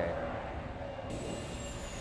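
Jet aircraft engines in flight: a steady low rumble, with a faint high whine falling in pitch in the second half.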